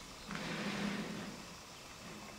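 A motor vehicle's engine passing by, swelling about a quarter second in and fading away over about a second.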